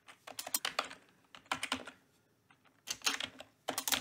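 Computer keyboard typing: three short runs of keystrokes, with a quiet pause of about a second between the second and third.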